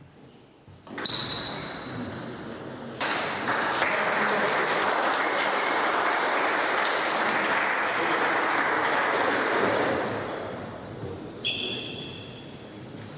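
A celluloid table tennis ball pings off bat and table about a second in, ending the final rally. Then spectators applaud for about seven seconds, the applause fading out. Another ball ping comes near the end.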